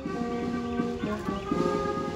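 Police brass band playing the national anthem slowly, in long held notes that change pitch every half second or so, during the flag salute.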